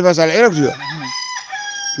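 A rooster crowing in the background: one long held call on a steady pitch that steps down lower about halfway through, starting as a man's speech breaks off.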